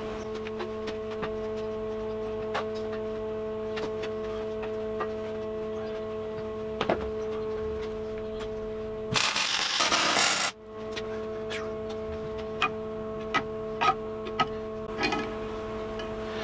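A steady electrical hum at several fixed pitches, with small handling clicks and knocks. About nine seconds in, a loud rush of noise lasting just over a second: a cloth cover sheet being pulled over the work area.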